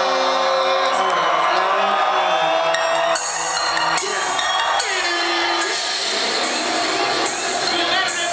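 Live hip-hop show: loud music through the club's sound system, with voices and crowd shouting and whooping over it.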